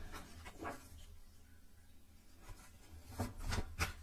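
Tarot cards being handled: soft rustling and a few light taps, bunched near the end, over a faint low hum.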